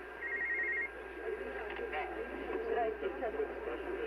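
A BBC shortwave news broadcast received in lower sideband on a MiniSDR software-defined radio and heard through its speaker: a narrow, band-limited voice with a steady faint whistle under it. A brief warbling trill sounds near the start.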